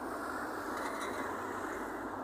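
Steady road traffic noise: an even hiss with no distinct events.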